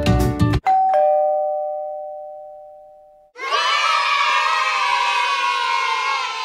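Background music cuts off about half a second in. A two-note ding-dong chime follows, high note then low, ringing and fading away. From about halfway, a crowd of voices cheers and shouts steadily.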